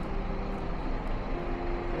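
Steady road-traffic noise of a city street, a low even rumble of vehicle engines and tyres.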